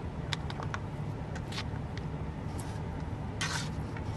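Low steady hum inside a car, with a few light clicks of a fork against a food container in the first two seconds and a brief rustle about three and a half seconds in.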